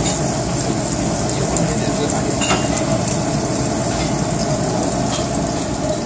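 Pieces of beef sizzling steadily on the wire mesh of a charcoal yakiniku grill, against a background murmur of voices.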